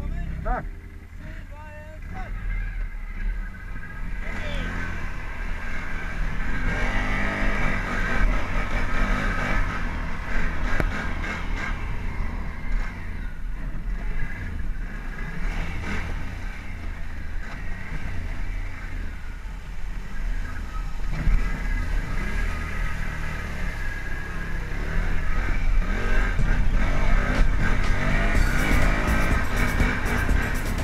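Quad bike (ATV) engine running as it is ridden, mixed with a music soundtrack.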